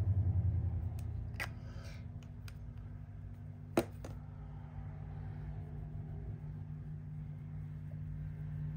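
Small clicks of a plastic cosmetic tube and its cardboard box being handled, with one sharper click just before the middle, over a steady low hum.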